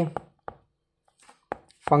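About four short, sharp taps of a stylus on a tablet's glass screen during handwriting: two in the first half-second, two more near the end.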